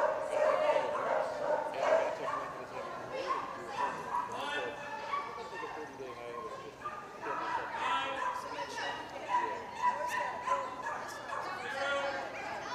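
A dog yipping and barking again and again, with people talking in the background.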